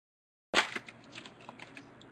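Foil trading-card pack wrapper crinkling and tearing as it is opened by hand: a sharp crackle starts suddenly about half a second in, followed by a run of lighter crackles.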